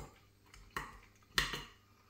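A fork knocking against the dish twice while picking up vegetables, the second knock louder.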